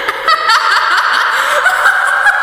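A person laughing in short, repeated snickering chuckles, a gloating villain's laugh.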